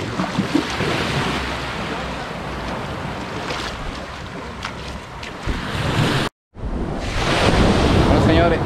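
Small waves washing onto a sandy beach, with wind buffeting the microphone in a low rumble. The sound cuts out completely for a split second about six seconds in, then returns louder.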